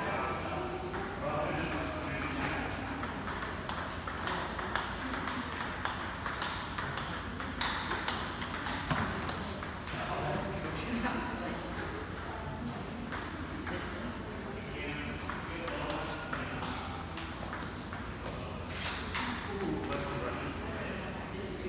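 Table tennis rally: a ball clicking sharply off the paddles and bouncing on the table, again and again.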